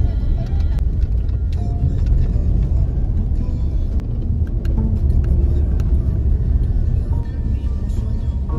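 A car driving along a road: steady low road and engine rumble, with music playing over it.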